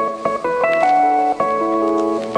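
Background music: an instrumental melody of held notes that change every fraction of a second.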